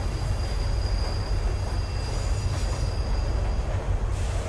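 Commuter train running, heard from inside the carriage: a steady low rumble with a thin high whine over it that stops shortly before the end.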